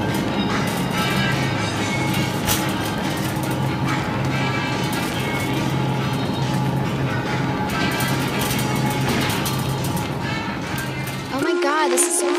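Shopping cart rolling and rattling across a store floor, with a steady low hum and voices in the background. Music with a held tone and a warbling sound cuts in near the end.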